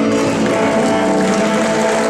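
Fiddle, electric guitar and double bass holding a final chord, with the audience starting to applaud over it.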